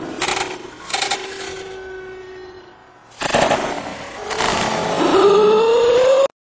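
A heavy body landing on frozen lake ice and crashing through into the water with splashing, amid loud sudden bursts of noise and onlookers yelling; a rising yell near the end.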